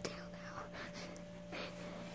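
A person whispering in short breathy bursts, over a steady low hum.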